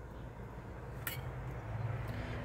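Quiet handling of thin aluminum craft wire being threaded by hand, with one light click about a second in, over a low steady hum.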